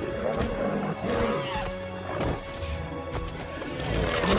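Dramatic film score with held orchestral notes, mixed with the growls and roars of a giant ape and a dinosaur fighting.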